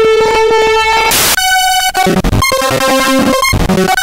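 Electronic music: a chopped, stuttering run of held pitched tones that jump to new pitches every half second or so, with a short burst of noise about a second in. The sound stops abruptly at the very end.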